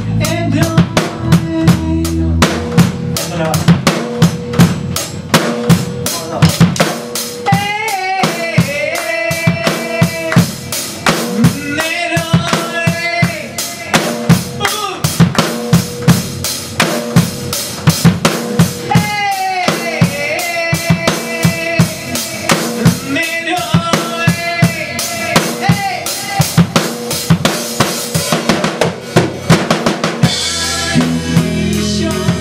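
A rock band jams live: a drum kit keeps up a fast, steady beat under electric guitars. A lead line with bent notes comes in and out several times over the beat.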